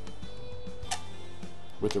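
A single sharp plastic click about halfway through: the battery compartment cover of a Comica CVM-WM100 Plus wireless receiver snapping shut. Steady background music plays underneath.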